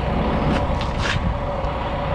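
Steady low rumble and hum of a running engine, with a few short brushing hisses.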